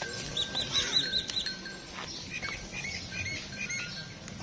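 Small birds chirping: a quick run of about six high chirps in the first second and a half, then a looser series of lower chirps through the second half.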